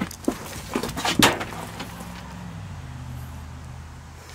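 Several knocks and clatters of loose debris being handled, the loudest about a second in.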